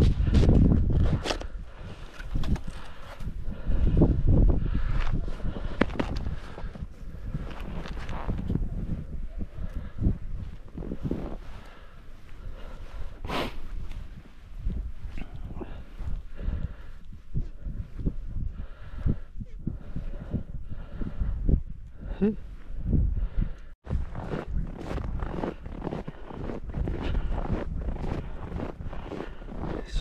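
Wind buffeting the microphone in a steady low rumble, with irregular crunching of snow and rustling of gloves and clothing as fishing line is handled; footsteps crunch in snow near the end.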